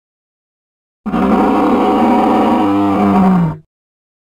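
Dinosaur roar sound effect: one loud roar starting about a second in, lasting about two and a half seconds and dropping in pitch as it cuts off.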